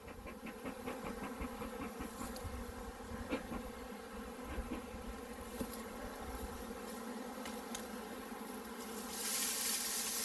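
Swarm of honeybees flying around the microphone, a steady buzzing hum. A louder rushing noise rises near the end.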